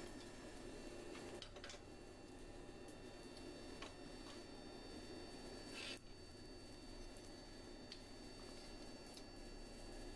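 Very faint metal-on-metal handling as a red-hot flat steel bar is pulled round a pipe jig with a blacksmith's bending wrench, with a few brief scrapes or clicks over a steady low room tone.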